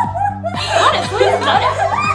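Several women laughing together in quick bursts of giggles, over steady background music.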